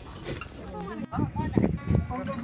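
Indistinct voices of several people, with low knocks and handling noise. The sound drops out abruptly for an instant about a second in.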